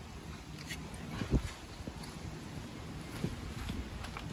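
A few soft knocks, the loudest about a second and a half in, over a steady low rumble.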